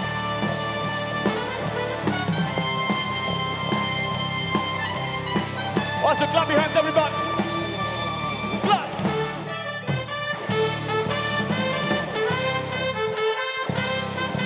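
A live band playing an instrumental section, with drums, bass guitar and electric guitar. The bass and drums drop out briefly near the end.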